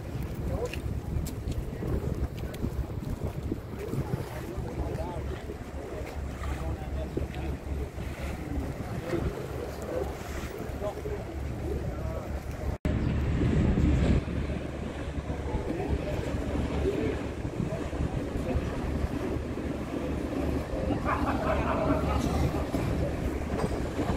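Wind buffeting the microphone over outdoor harbour ambience, with people talking in the background. After a brief dropout about halfway through, the wind rumble is louder.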